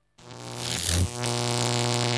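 Loud electric buzz from stereo loudspeakers, a cartoon sound effect: a low, steady hum overlaid with hiss. It swells in after a brief moment of silence.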